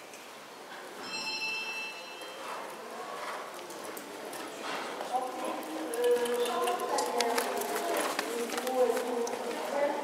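A horse trotting on the sand footing of an indoor arena, its hoofbeats heard as soft clip-clop, with people's voices talking from about halfway. A brief high ringing tone sounds about a second in.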